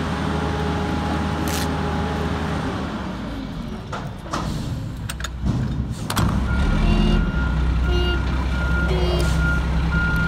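Front-loader garbage truck's diesel engine running, with a faint steady whine over it for the first couple of seconds. From about six seconds in, its reversing beeper sounds about twice a second.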